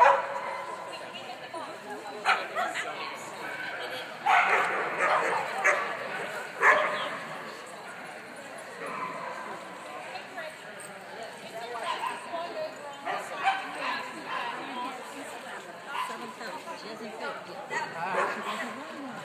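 A dog barking and yipping in short bursts as it runs an agility course, mixed with a handler's called commands and chatter.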